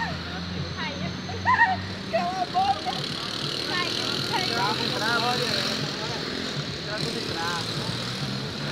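Scattered voices over street traffic, with a car driving past about four seconds in.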